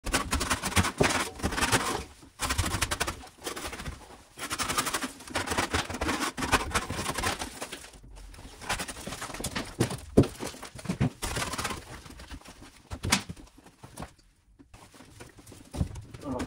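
Old plaster being scraped and pried off a wall with a hand scraper and pulled away by hand, in irregular bursts of scraping, crumbling and knocking as pieces break loose.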